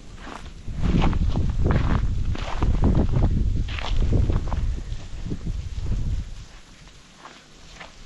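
Footsteps walking across a lawn scattered with dry leaves and patchy snow, dying away about six seconds in.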